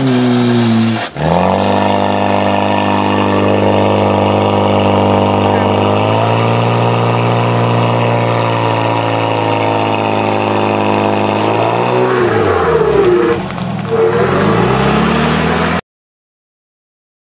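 Portable fire pump's engine running hard while pumping water through the hoses. It dips sharply about a second in and recovers, shifts pitch around the middle, then falls and rises again near the end before the sound cuts off abruptly.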